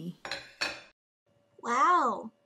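Two quick clinks like dishes, then a short voice exclaiming "whoa" with a rising-then-falling pitch, an added sound effect.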